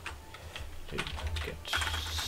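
Computer keyboard keys being typed: a few separate keystrokes, then a louder run of key clicks near the end as a command is entered into a terminal.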